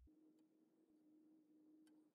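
Near silence: a faint steady hum, with a faint tick near the end.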